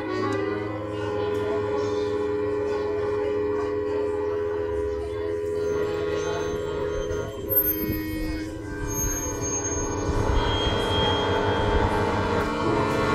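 Live experimental electroacoustic music: a piano accordion holding steady chords under sampled and effects-processed electronic sounds, with a low rumble swelling near the end.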